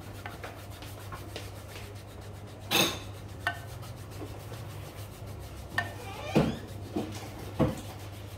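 Hands rubbing and kneading skin on a bare foot during a massage, with about six short, louder rubs, the loudest a little under three seconds in, over a steady low hum.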